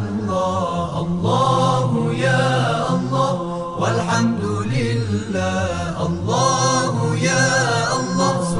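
Arabic devotional vocal chant (nasheed) in long, ornamented melodic phrases over a steady low drone, with the melody changing every second or two.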